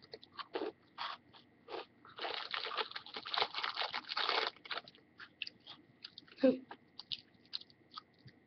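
A fortune cookie being crunched and chewed close to the microphone: scattered short crunches, with a denser stretch of chewing lasting about two seconds in the middle.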